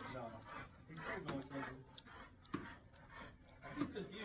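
A dog's claws scraping and scuffling on a hard floor as it scrambles about, with a couple of sharper knocks.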